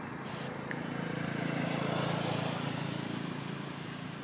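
A motor vehicle's engine passing by: a low, steady hum that grows louder to a peak about halfway through and then fades.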